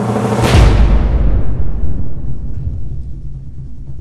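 A heavy impact about half a second in, a sudden thud followed by a low rumble dying away over about two seconds, over background music.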